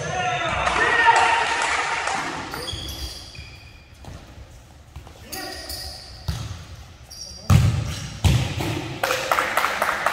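A futsal ball being kicked and bouncing on a hard gym floor, making sharp thuds that echo around the hall. The loudest come about seven and a half and eight and a half seconds in. Players shout near the start.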